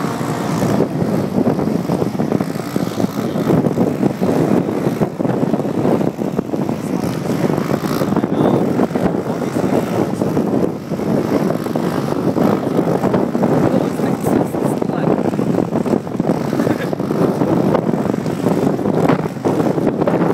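Loud, steady driving noise of a car moving at speed, engine and road noise running unbroken.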